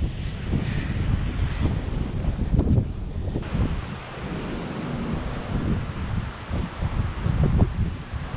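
Wind buffeting the microphone in uneven gusts of low rumble. About three and a half seconds in, the background noise changes abruptly.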